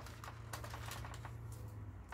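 Thin Bible pages being leafed through by hand: a scatter of faint, light papery ticks and rustles.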